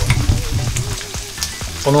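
A spatula stirring raw egg yolks and grated Parmigiano-Reggiano into a thick paste in a stainless steel bowl. It scrapes and sloshes through the mixture, with a few light ticks against the bowl partway through.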